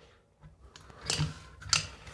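Caulking gun squeezed to push silicone into drilled holes in wall tile: a few short clicks from the trigger and plunger, the loudest about a second in and near the end.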